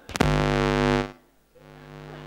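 Loud electrical buzz blaring through the PA sound system for about a second, then cutting off abruptly; after a short gap a quieter steady buzzing hum returns and keeps going.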